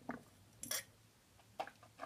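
A few short swallowing and mouth noises from drinking milk out of a mug. The loudest is a brief breathy sound just under a second in, and a few small wet clicks come near the end.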